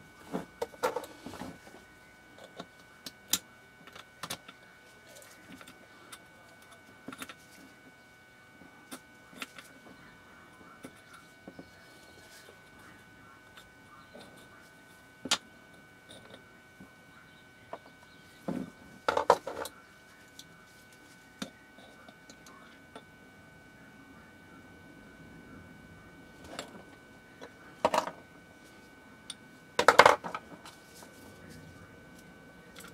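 Small metal gearbox parts of a cordless screwdriver clicking and clinking as they are handled and lifted out: scattered single clicks, with short bursts of clatter about a second in, near the middle and near the end.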